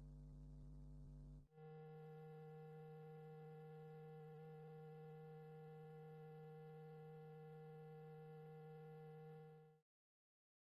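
Near silence with a faint, steady electrical hum. The hum breaks briefly about a second and a half in, then carries on unchanged until it cuts off just before the end.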